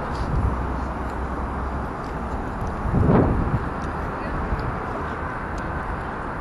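City street ambience: a steady wash of traffic and passing pedestrians, with a low rumble in the first two seconds and a brief voice about three seconds in.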